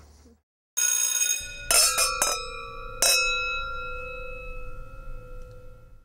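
Bell-like metal chimes struck about five times in the first three seconds, their ringing tones dying away slowly.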